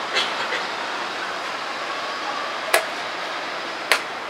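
Blitz chess play: chess pieces being set down on a wooden board and the chess clock button being pressed, heard as two sharp clacks, one a little past the middle and one near the end, with a faint one just after the start. A steady background hum runs underneath.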